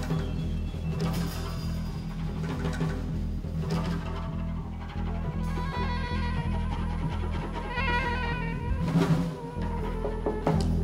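Live acoustic jazz from a quartet of soprano saxophone, piano, upright bass and drums, with the upright bass's low notes carrying throughout and occasional percussion strikes, one of them loud near the end.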